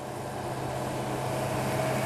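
A motor vehicle running on the road: steady engine and tyre noise with a low hum, and a faint tone that grows stronger near the end.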